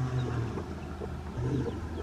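Broody hen giving low clucks to her newly hatched chicks, a couple of short sounds over a steady low background hum.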